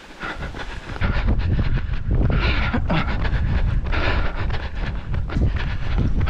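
Wind buffeting the microphone of a camera carried by a runner, a steady low rumble that grows louder about a second in, with rapid ticking and hissing bursts about every second and a half.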